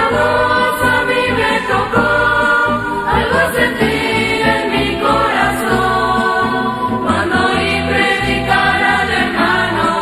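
A Christian church ensemble singing a hymn in several voices, with instrumental accompaniment and a steady bass line.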